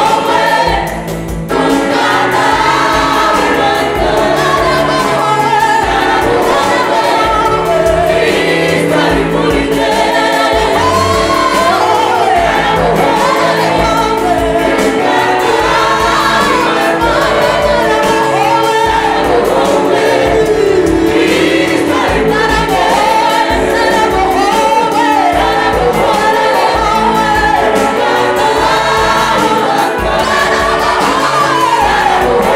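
Rwandan gospel choir of men and women singing together into microphones over an amplified band with a steady beat. The music dips briefly about a second in, then runs on at full level.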